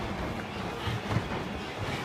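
A group of people exercising together on gym mats: a busy, uneven clatter of feet and bodies landing, with a sharper knock about a second in.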